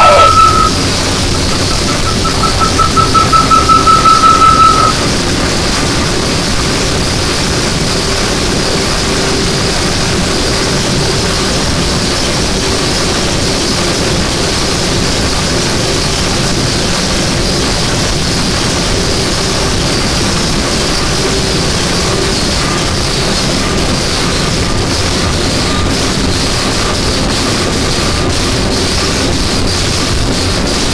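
Power electronics / death industrial noise track: a high feedback tone pulses rapidly and stops about five seconds in, leaving a dense, steady wall of static with a faint low drone and a high hiss.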